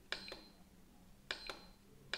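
Quiet button presses on an iMAX B6 balance charger while paging through its menu screens: two pairs of sharp clicks about a second apart, some followed by a brief high beep.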